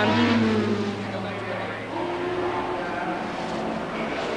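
Racing saloon car engines, the Vauxhall Carlton leading, running at easy revs as the cars come by on their slowing-down lap after the finish. One engine note falls in pitch over the first two seconds, then a higher note rises about two seconds in.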